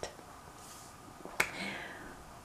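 A single sharp click about one and a half seconds in, followed by a soft, faint murmur of voice.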